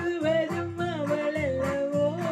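Music played on a Technics electronic keyboard: a melody line holding long, wavering notes and gliding down near the end, over a bass and chord accompaniment that repeats about twice a second.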